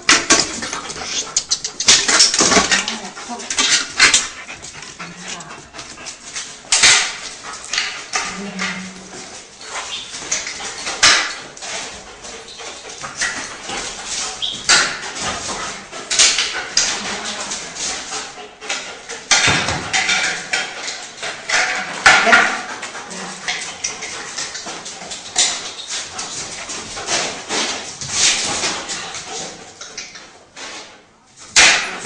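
A dog barking and whimpering, with irregular sharp noisy sounds throughout.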